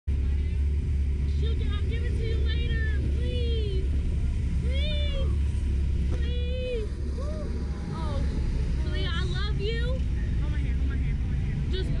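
Riders on a reverse-bungee slingshot ride screaming in a string of short, high cries that rise and fall, over a steady low rumble of wind on the ride-mounted camera.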